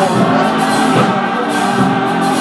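Gospel music: a choir singing loud, sustained notes.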